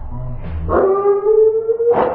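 A wooden Jenga block tower collapsing onto a table, then a long, slightly rising howl-like cry held for about a second as it falls.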